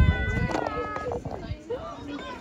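High-pitched children's voices calling out in long, drawn-out cries that glide up and down, overlapping, fading about a second in into scattered shorter voices. A low rumble of wind or handling on the microphone at the start.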